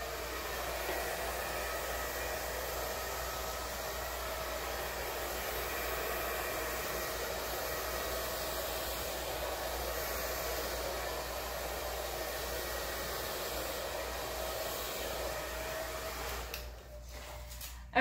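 Hair dryer blowing steadily, pushing wet acrylic paint across the canvas in a blowout, with a faint hum under the rush of air; it switches off near the end.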